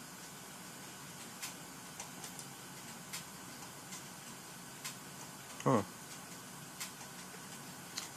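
A few scattered computer mouse clicks, single sharp ticks a second or so apart, over a faint steady hum.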